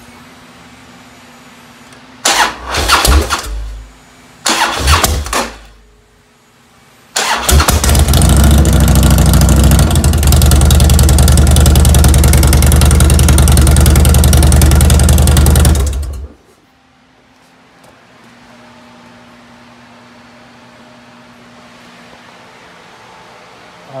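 Harley-Davidson Road Glide's V-twin engine being cranked by the starter in two short tries, then catching about seven seconds in. It runs loudly for about nine seconds and is then switched off.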